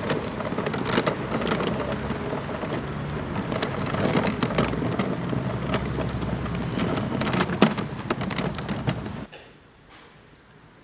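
Wooden-wheeled hand cart (Leiterwagen) rattling as it is pulled over asphalt: a steady rolling rumble with irregular knocks and clicks, cutting off suddenly about nine seconds in.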